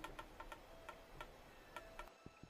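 A wooden stick bow and its string creaking as they are drawn taut, heard as a series of faint ticks that come close together at first and then further apart.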